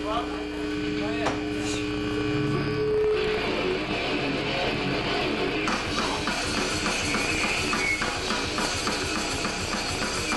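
A grindcore band plays live: an electric guitar holds two steady ringing notes for about three seconds, then the full band comes in with distorted guitar and drums, and cymbals join from about six seconds in.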